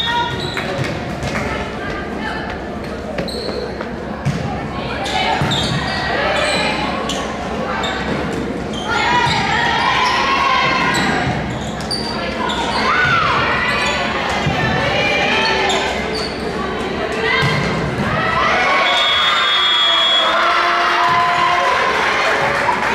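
Volleyball rally in an echoing gymnasium: sharp ball hits and thuds, with players calling out and spectators shouting, the voices swelling about nine seconds in and again near the end as the point is won.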